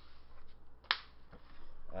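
A trading card slapped down onto a playmat: one crisp snap about a second in, with a few faint ticks of cards being handled around it.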